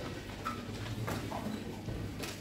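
Hall room noise of people moving about: a few scattered knocks and footsteps on a hard floor.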